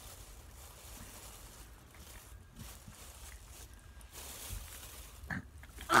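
Faint mouth sounds of two people chewing jelly beans, with a short voice sound of disgust near the end.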